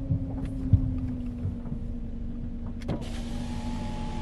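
A vehicle's engine idles with a steady low hum. Near the end there is a click, then the whine of the electric window motor lowering the rain-spotted side window, and the hiss from outside grows louder as the glass opens.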